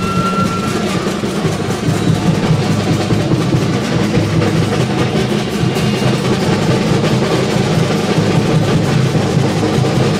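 Large bass drum and hand cymbals played together in a loud, continuous beat without pause.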